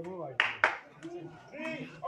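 Two sharp smacks about a quarter of a second apart, about half a second in, typical of a sepak takraw ball being struck during a rally, among spectators' voices.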